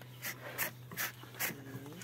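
Four evenly spaced saw strokes rasping through a water buffalo's horn, with a short low vocal sound near the end.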